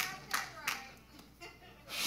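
A few scattered hand claps, about three in the first second, spaced a third of a second apart, then dying away.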